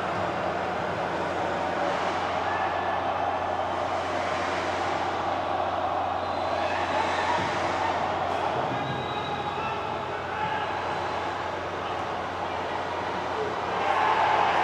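Steady ambient noise of a football match in an empty stadium, with faint shouts of players on the pitch.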